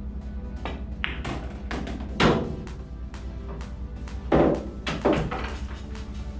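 Background music with a steady beat, over which a pool shot is heard as several sharp knocks: the cue striking the cue ball and billiard balls clacking against each other and the cushions. The loudest knocks come about two seconds in and again about four and a half seconds in.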